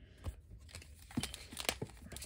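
Faint rustling and light clicks of Weiss Schwarz trading cards being handled, with the foil booster-pack wrappers crinkling as a hand reaches into the pile of packs near the end.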